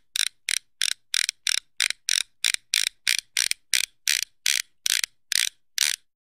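A steady series of short, sharp mechanical clicks, about three a second, evenly spaced and spaced slightly wider near the end.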